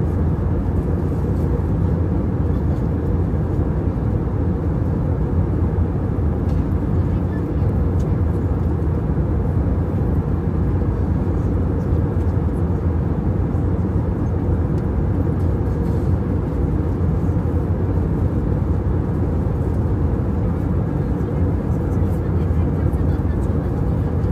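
Steady, low-pitched cabin noise of an airliner in flight, the engine and airflow noise heard from a passenger seat, even and unchanging throughout.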